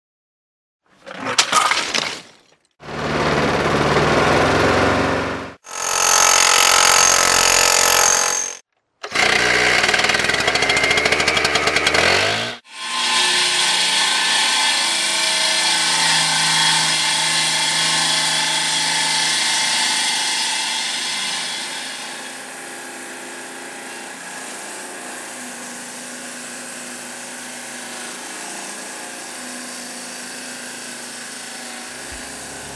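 Four short, loud bursts of machine noise, each cut off abruptly, follow one another in the first dozen seconds. Then a Clipper Major CM 501 masonry table saw runs steadily, its diamond blade cutting granite with a ringing tone, and the sound grows quieter about 22 s in.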